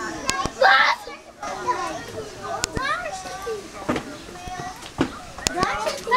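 Chatter and calls of children and adults in a crowd, with a loud voiced outburst about a second in and a few sharp clicks scattered through.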